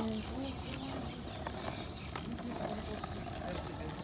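A child's kick scooter rolling along a concrete sidewalk, its small wheels giving a low rumble with scattered irregular clicks, mixed with walking footsteps.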